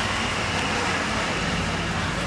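A motor vehicle engine idling with a steady low hum.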